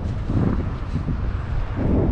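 Wind buffeting the microphone: a loud, uneven low rumble with no clear tone in it.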